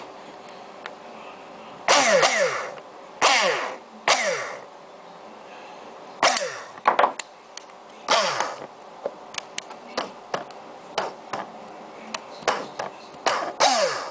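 Coil spring in a metal sliding mechanism twanging about seven times, each a quick boing that drops in pitch, with light metal clicks between them late on. The twang is the fault the owner calls the problem.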